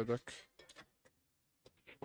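A man's voice commentating ends a phrase about a quarter second in. After it comes near silence, broken by a few faint clicks.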